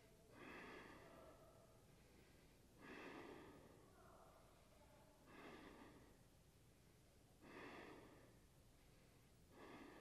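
A man's slow, soft breathing while he holds a wheel-pose backbend: four faint breaths, about two and a half seconds apart.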